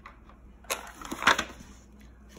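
A box of wax crayons being set down on a table: a sharp click, then about half a second later a short, louder rattle of the crayons in the box.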